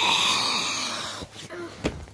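A person's long, breathy wheezing exhale close to a phone microphone, swelling and then fading, followed by two short knocks near the end.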